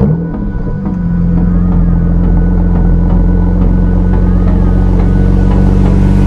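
BMW 335i's twin-turbo 3.0-litre inline-six starting: a rev flare right at the start settles within about a second into a steady idle.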